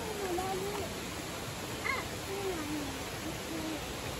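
Shallow stream water running steadily over stones, with a faint wavering hum-like voice over it.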